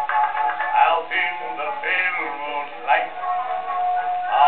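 Acoustic-era 78 rpm record of a male music-hall singer with accompaniment, played on a horn gramophone, with no treble above a thin midrange. The singer holds a long note near the end.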